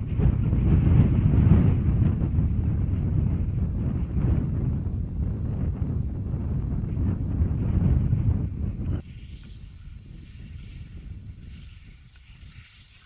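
Wind buffeting the microphone: a loud, gusting low rumble that cuts off suddenly about nine seconds in, leaving a much quieter, higher hiss.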